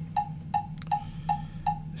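Roland TD-1 drum module's metronome clicking steadily, just under three clicks a second, set to seven beats to the bar; a higher, accented click for the first beat of the next bar comes at the very end.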